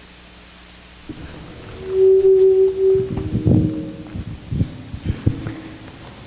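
A steady hum-like tone lasting about a second, then a run of irregular knocks and thumps, like handling noise on a microphone.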